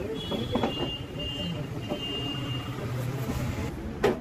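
Background road traffic: a vehicle engine running with a low steady hum, and a high steady electronic beep sounding twice over it. A few light clicks come about half a second in, and a sharp knock lands at the very end.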